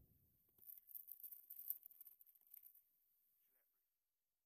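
Near silence, broken by a scatter of faint, short clicks and rustles of hands handling gear for about two seconds, starting about half a second in.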